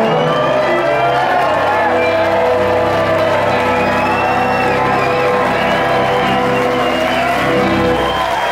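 A live band holds the closing chord of a slow song, with a harmonica sounding over it, while the audience cheers and whoops. The held chord stops near the end.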